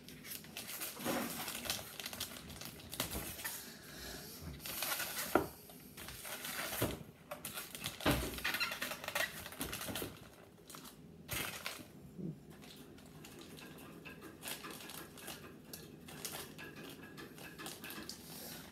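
Irregular clicks, taps and rustles of hands unpacking and handling lightsaber parts and their packaging, busier for the first twelve seconds or so and sparser toward the end.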